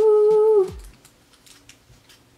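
A woman's voice holding a long "ooh" on one steady note, cut off under a second in, followed by only faint sound.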